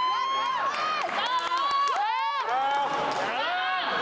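Several high-pitched voices shouting and cheering, one long drawn-out call after another, overlapping and rising and falling in pitch.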